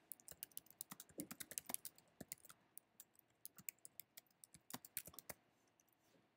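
Faint typing on a computer keyboard: a quick, uneven run of keystrokes that stops about five seconds in.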